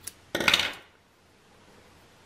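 Small metal sewing scissors handled: a short sharp click at the start, then a brief metallic clatter about half a second in as they are cut with or set down on the table.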